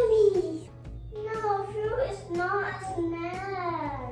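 A young girl singing, her voice gliding up and down through long held notes. The loudest is a falling note right at the start.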